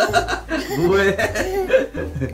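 Young children laughing and giggling.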